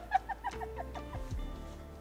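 A woman laughing, a quick run of short 'ha' pulses that falls in pitch and trails off about a second in, over soft background music.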